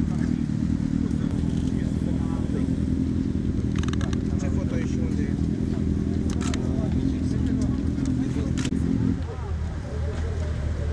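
Motorcycle engines running steadily at idle, a low, even drone that drops away about nine seconds in, leaving a lower hum. A few light clicks sound over it.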